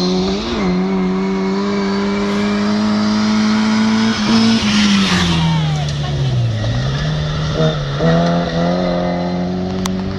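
Rally car engine held at high revs as it comes down a gravel stage. It passes close about five seconds in with a rush of tyre and gravel noise and a drop in engine pitch, then climbs in pitch again as it pulls away.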